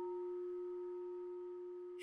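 Singing bowl ringing out, a steady low tone with a fainter higher one above it, slowly fading.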